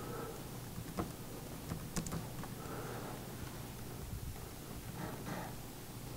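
Faint typing on a laptop keyboard: a few scattered key clicks over low room noise.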